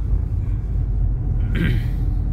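Steady low rumble of road and engine noise heard inside a moving car's cabin, with a brief higher sound about one and a half seconds in.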